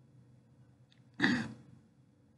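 A man clearing his throat once, a short burst a little over a second in.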